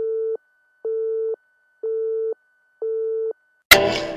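Telephone busy tone: four short, evenly spaced beeps about one a second. Near the end a sharp click cuts it off and music begins.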